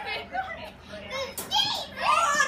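Young children's excited voices, unintelligible chatter, with higher-pitched cries near the end.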